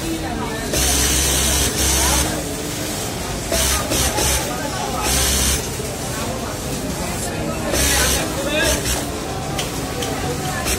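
Industrial single-needle lockstitch sewing machine top-stitching a shirt collar, running in short bursts of about a second, five times, with pauses between as the fabric is turned and guided.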